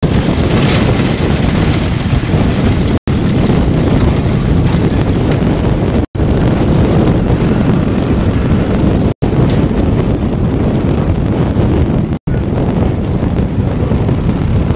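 Loud, steady rumble of wind buffeting a camera microphone, heaviest in the low end, cut by a brief dropout about every three seconds.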